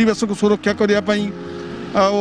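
A voice speaking over background music with steady held notes; about a second and a half in the speaking stops, leaving the music and a steady noise.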